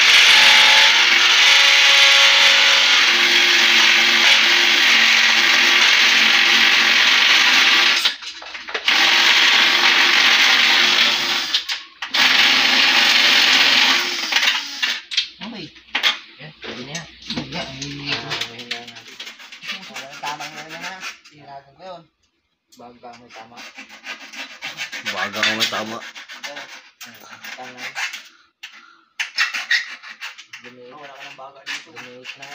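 Handheld cordless power drill running steadily, stopping briefly about eight seconds in and again about twelve seconds in, then falling silent about fourteen seconds in; after that, softer voices.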